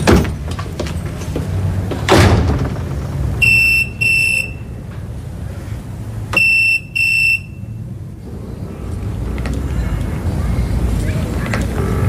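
Electronic telephone ringing in a double-ring cadence: two double rings about three seconds apart, starting a few seconds in. Before them, about two seconds in, there is a single thump.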